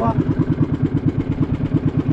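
Motorised outrigger fishing boat's engine running with an even, rapid chugging of about ten beats a second.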